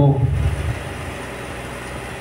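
A steady, unbroken background hum in a hall during a pause in speech through a microphone, after the last word trails off in the first moments.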